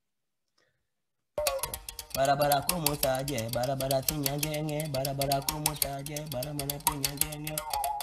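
Mouth bow playing: the string is tapped in a rapid, even rhythm while the player's mouth, used as the resonator, shifts the higher overtones above a steady low note. It starts about a second and a half in.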